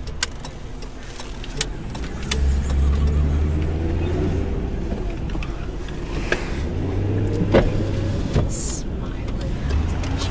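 Car engine and cabin noise heard from inside a car pulling away from a standstill. The low hum swells about two seconds in and the engine note rises and falls, with a few scattered clicks.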